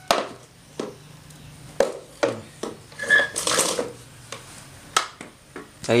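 Hard plastic parts of a chicken feeder being pressed and fitted together by hand: a series of irregular sharp clicks and knocks, with a short scraping rub about three seconds in.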